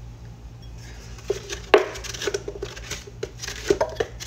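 Freshly ground coffee and cinnamon being poured and knocked out of a blender jar into a glass bowl: irregular knocks and scraping, with sharp hits about two seconds in and near the end.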